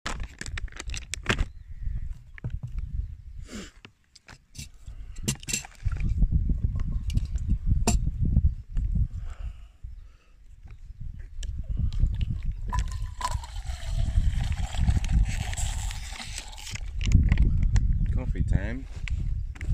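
Crinkling and clicking as a snack bag and a plastic water bottle are handled, over a low uneven rumble of wind on the microphone. In the last few seconds water pours and gurgles out of the plastic bottle, its pitch falling.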